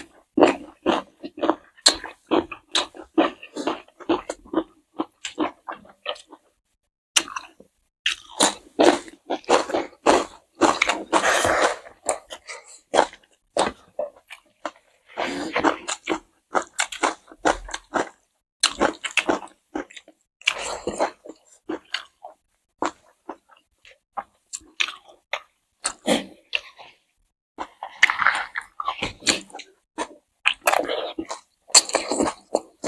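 Close-miked chewing of two people eating rice, curry and fried green chillies by hand: irregular runs of wet chewing and mouth sounds with occasional crunches, broken by short pauses.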